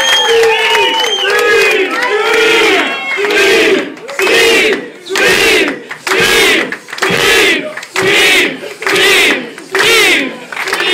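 A crowd of many voices cheering and shouting, settling after about four seconds into a rhythmic chant in unison, about one and a half shouts a second.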